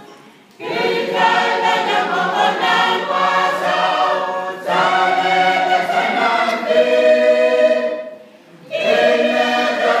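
Mixed choir of men and women singing a hymn in long phrases, with a short break for breath just after the start and another near the end.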